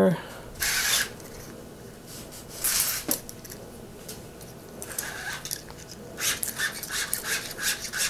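Bicycle steel inner cable being drawn by hand through its housing: a couple of brief scrapes, then a run of quick rasping rubs from about five seconds on. The cable is dragging in the housing with a lot of stiction, enough that it may need replacing.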